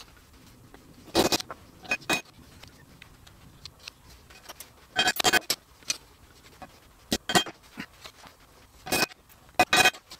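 Thin walnut slats of a brass-riveted trivet clacking against each other and the workbench as the linkage is handled and folded: seven or eight sharp wooden knocks a second or two apart, some in quick pairs.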